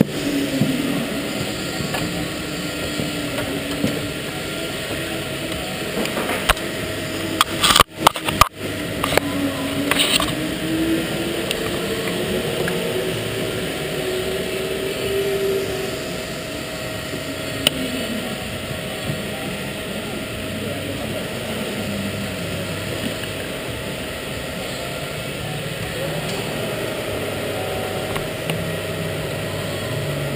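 Steady din of go-karts running on an indoor track, their drone slowly rising and falling in pitch, with voices in the background and a couple of sharp knocks about eight seconds in.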